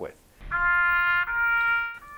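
Bugle playing two held notes, the second higher than the first, cut off suddenly just before the end.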